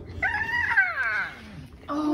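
A dog whining: one long cry that starts high and falls steadily in pitch, lasting about a second.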